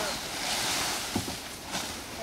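Large dry fan-palm fronds rustling and swishing as they are handled and dragged, with two short sharp crackles a little after a second in.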